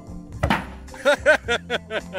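A gas-fired potato cannon fires once: a single sharp bang about half a second in. Background music with a run of pitched notes follows.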